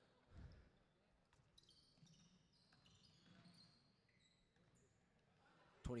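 Faint basketball dribbling on a hardwood gym floor, with one clear bounce about half a second in, and faint short high squeaks from sneakers on the court.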